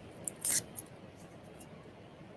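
A few short crinkling rustles of packaging being opened by hand, the loudest about half a second in.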